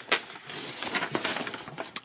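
Paper rustling as a folded instruction manual is handled and its pages turned, with a few light crackles.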